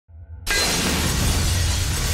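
Glass shattering in a produced title sound effect: a low rumble, then about half a second in a sudden loud crash of breaking glass that carries on as crackling debris over a deep boom.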